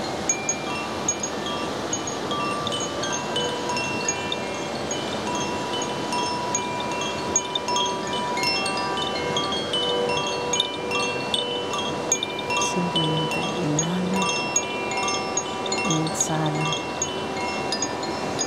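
Koshi bell, a hand-held bamboo chime, swung gently so its clapper strikes the tuned metal rods inside several times a second. The clear, overlapping tones keep ringing into one another in a continuous shimmer over a steady background rush.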